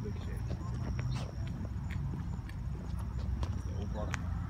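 Footsteps on cracked asphalt: irregular, sharp steps over a steady low rumble.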